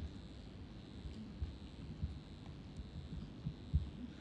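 Faint, irregular low bumps and taps from a laptop being worked on a lectern, picked up through the lectern microphone, over a steady hiss with a thin high whine.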